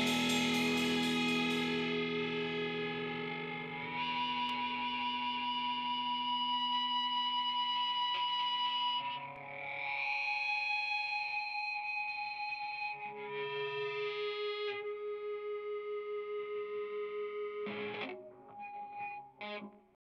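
Distorted electric guitar through effects: the band's last chord rings out and fades, then long held guitar notes change pitch every few seconds with a slight pulsing. The notes break up near the end and stop.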